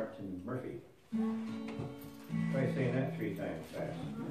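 Acoustic guitar plucked about a second in, with a note ringing on and then a lower note ringing, as between-song noodling rather than a played tune; a few spoken words before and over it.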